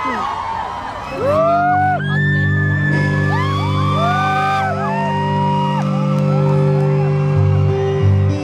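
Crowd screaming and whooping. About a second in, a live rock band comes in with a steady held chord, and the high screams of the fans carry on over it.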